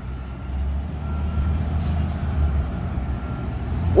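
Delivery truck engines running with a steady low rumble as the trucks move slowly past.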